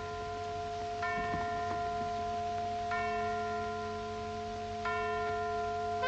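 Soundtrack music: a held low chord with a bell-like chime struck three times, about two seconds apart, each strike ringing on and fading.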